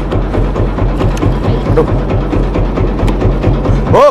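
Fishing boat's engine idling, a steady low thudding beat about five times a second.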